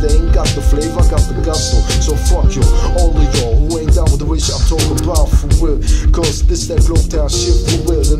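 Hip hop track: rapped vocals over a steady drum beat with heavy bass.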